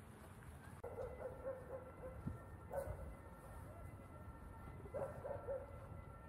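An animal calling three times, about two seconds apart, each call a short wavering cry.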